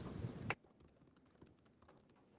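Low room noise on the microphone that cuts off abruptly about half a second in, followed by near silence with a few faint, light clicks.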